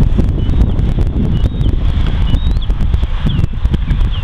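Wind buffeting the camera's microphone: a loud, uneven low rumble that rises and falls. A few faint, short high chirps sit above it.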